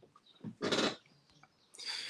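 A man's breathy laughter without words: a short chuckle about half a second in and another near the end.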